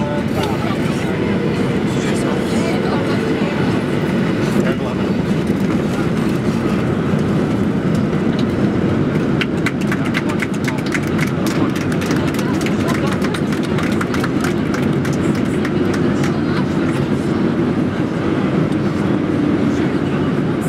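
Boeing 737-800 cabin noise during a gusty landing: a steady, deep rumble of engines and airflow, with a stretch of quick, sharp rattling clicks through the middle.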